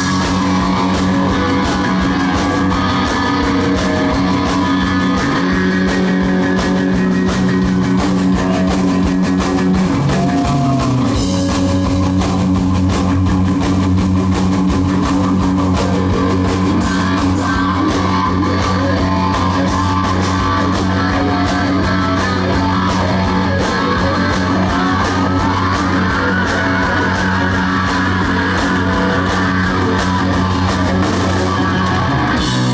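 Rock band playing live at full volume: electric guitars, bass guitar and drum kit, with sustained low bass notes that drop in pitch about ten seconds in.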